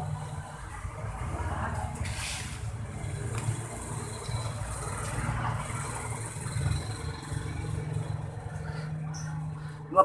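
Steady low rumble of background noise, with a short hiss about two seconds in.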